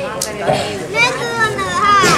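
A man's voice speaking loudly through a stage microphone and loudspeakers, rising in pitch in exclaiming tones about a second in.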